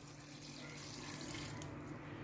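Water poured from a jug into a pot of beans and vegetables, a steady quiet pouring splash that thins out near the end.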